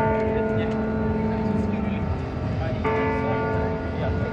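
Two long, steady-pitched held notes with rich overtones: the first lasts about two seconds from the start, and a second begins near three seconds in. They sit over a steady background of street noise and distant voices.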